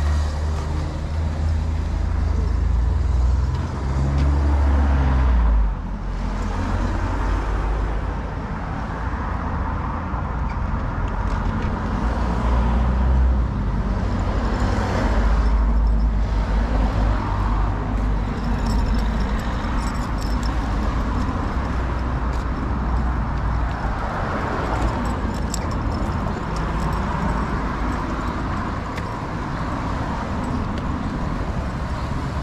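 Road traffic passing on the street alongside, swelling and fading several times, over a steady low wind rumble on the microphone.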